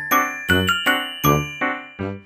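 A short musical jingle: a run of struck, ringing bell-like notes, about every third of a second, with a low bass note under several of them.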